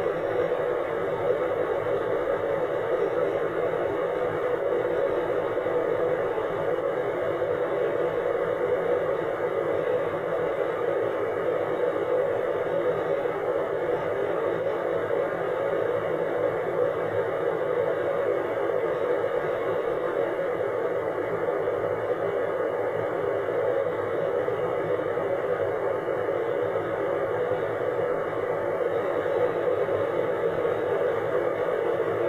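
Steady road and engine noise of a moving car, heard from inside the cabin, holding an even level throughout.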